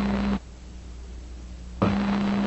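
Steady hiss and low hum of an old radio recording, dropping away about half a second in to a quieter gap and coming back near the end with a voice.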